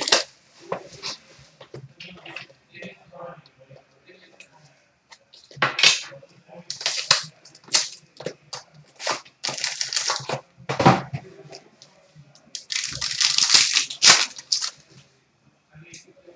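A sealed trading-card box being cut open and unpacked by hand: a knife working the seal, plastic wrap tearing and crinkling, and cardboard and packs being handled. It is sparse at first, becomes a string of sharp rustles and knocks from about six seconds in, and has a longer stretch of crinkling near the end.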